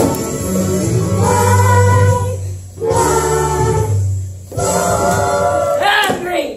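A group of student performers singing together over an accompaniment, in long held phrases broken by two short pauses.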